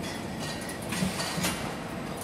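Novopac automatic shrink-wrapping machine running: a steady mechanical hum with sharp clicks and clacks about every half second.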